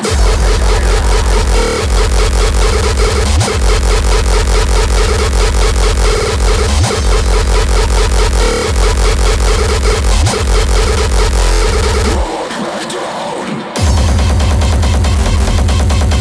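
Terrorcore (extreme hardcore techno) playing loud, driven by a heavy distorted kick drum that slams in right at the start. About twelve seconds in the kick drops out for a second and a half, then comes back in.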